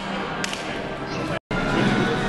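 Plastic toy lightsabers clacking together, sharp cracks about half a second and a second in, over crowd chatter in a gym hall. Near the end the sound cuts out for an instant and comes back with louder chatter.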